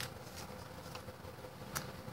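Quiet room tone with a faint steady hum and two small clicks, one at the start and one near the end.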